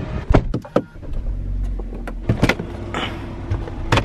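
Car door and cabin handling sounds as someone gets into the driver's seat: a run of clicks and knocks, then a firm knock about two and a half seconds in and another near the end, over a steady low hum.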